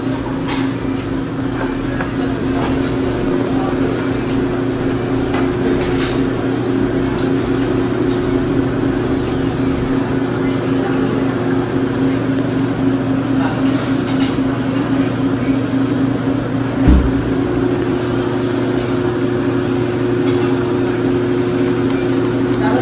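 A steady low mechanical hum, with occasional clinks of metal tongs and a strainer against a steel hotpot while beef slices cook in the broth, and one dull thump about 17 seconds in.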